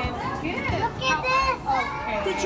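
Several young children's high voices talking and calling over one another.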